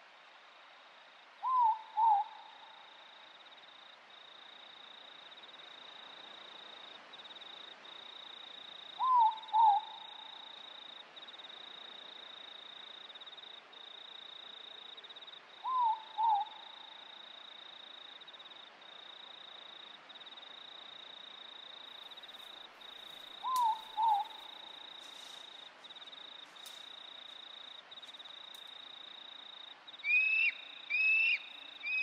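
An owl giving a two-note hoot four times, roughly every seven seconds, over a steady high insect trill and a faint hiss of night-forest ambience.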